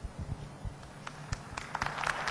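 A handheld microphone knocking dully a few times as it is set down and handled on a table. Scattered claps start near the end as applause begins.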